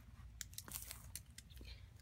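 Faint handling noise: a few light clicks and plastic crinkles as a small magnet is picked up.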